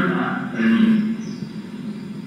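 A man speaking in a discourse. His voice is heard in roughly the first second, then pauses for the rest.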